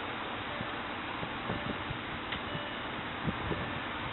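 Steady rushing air from the Porsche Cayenne's climate-control blower in the cabin, with a few faint clicks.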